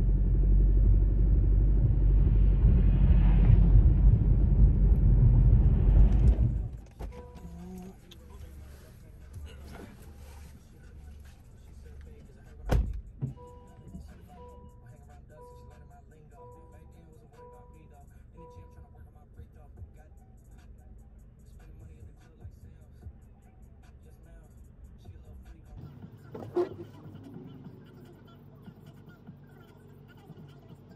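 Car cabin noise while driving, a steady low engine and tyre rumble that cuts off about seven seconds in. Then a quiet parked cabin with a single sharp knock and a run of about six short two-pitch beeps, roughly one a second.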